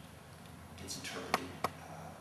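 A short hiss, then two sharp clicks or taps about a third of a second apart.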